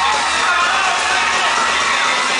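Live concert sound recorded from the audience: loud amplified music with a voice over it and crowd noise, steady throughout.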